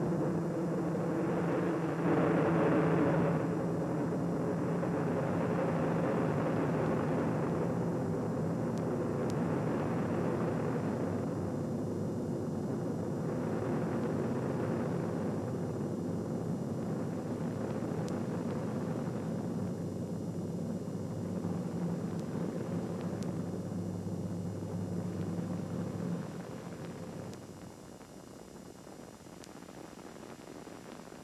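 Rocket noise of Space Shuttle Columbia's two solid rocket boosters and three main engines during ascent: a steady, dense rumble. It falls off noticeably in level about 27 seconds in.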